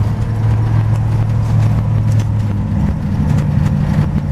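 Gen III Hemi V8 in a 1928 Dodge rat rod running as the car is driven, heard from inside the cab: a steady low engine note that rises in pitch about three seconds in.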